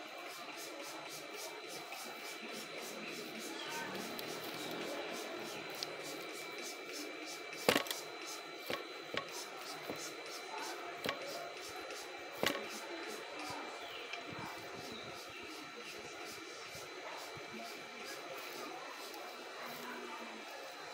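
Fingers rubbing and scrunching curly hair as a leave-in anti-frizz spray is worked in, a low steady rustle. Two sharp clicks from the spray bottle come about eight and twelve seconds in.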